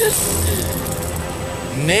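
Spinning prize wheel with pegs round its rim, rattling in a fast run of clicks as the pegs pass the pointer, over steady background music.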